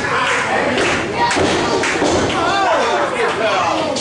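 A few thuds in a wrestling ring, bodies hitting the canvas. Shouting voices with rising and falling pitch come up in the middle.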